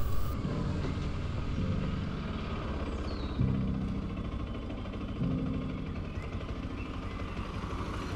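Bajaj Pulsar motorcycle's single-cylinder engine running low as the bike slows and stops, then ticking over at idle. Its note steps up briefly a couple of times, about three and a half and five seconds in.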